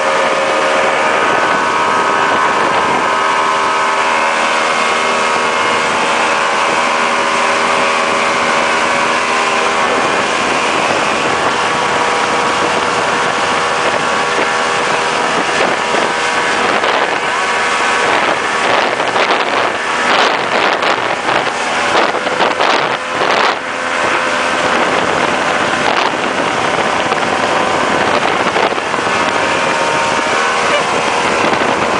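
Mercury 90 hp outboard motor running steadily at speed while towing a water skier, under the rush of wind and the churning wake. From about 17 to 24 seconds in, wind buffets the microphone in irregular crackles.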